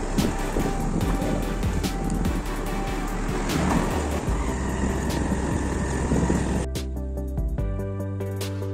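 Rushing wind and road noise from a moving motorbike under background music. The road noise cuts off suddenly near the end, leaving only the music.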